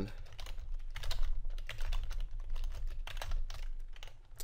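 Typing on a computer keyboard: a quick, irregular run of keystrokes, with a steady low hum underneath.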